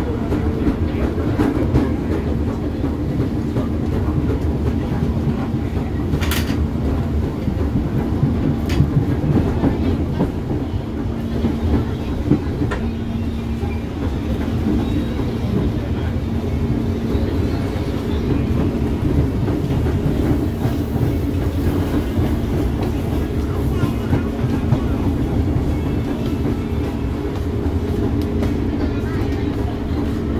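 KRL Commuterline electric commuter train running, heard from inside the car: a continuous low rumble of wheels on rails with a steady hum. A couple of sharp clicks come a few seconds in.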